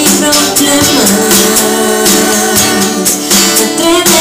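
Live acoustic guitar strumming with a voice singing over it.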